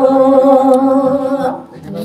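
A woman singing Balinese geguritan into a microphone, holding one long note at a steady pitch. The note fades out about a second and a half in.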